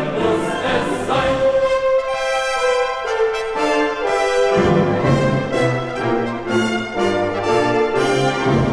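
Music: a choir singing a German soldiers' song with brass band accompaniment. About a second and a half in the bass drops out under a long held chord, then the bass and the march rhythm come back a little past four and a half seconds.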